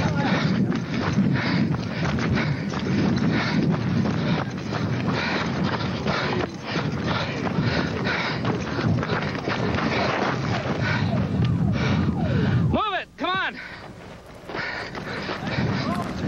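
Rough camcorder audio taken on the run over cracking ground during an earthquake: dense jostling, footfall and low rumbling noise full of sharp jolts. About three-quarters through it cuts out abruptly, a brief wavering pitched sound rises and falls in the gap, and the noise returns after a second or so.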